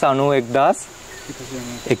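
Steady, high-pitched insect drone, heard in a pause between a man's spoken words.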